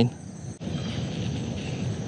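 Insects, likely crickets, chirping steadily in the background, with a low, even rustling noise that starts about half a second in.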